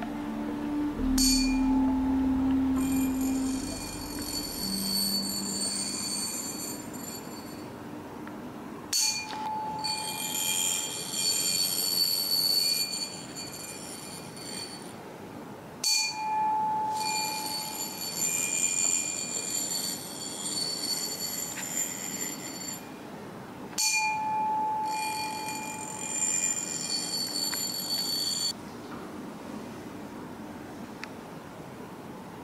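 Brass ear-cleaning tuning fork struck four times, about every seven or eight seconds. Each strike gives a clear high ring that dies away over about six seconds. The vibration is passed into the ear through a thin wire resting in the ear canal.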